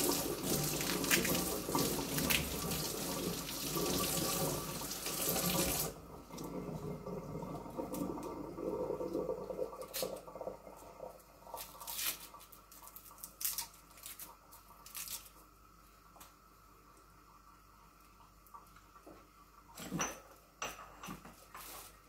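Kitchen tap running into a stainless steel sink as garlic cloves are rinsed under it, shut off abruptly about six seconds in. Afterwards only faint scattered clicks and taps from garlic being peeled by hand, with one sharper knock near the end.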